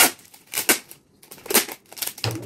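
Hard plastic parts of an overlock machine being handled, knocking and clicking: a sharp knock at the start, the loudest, then two more about half a second and a second and a half in, with light rustling between.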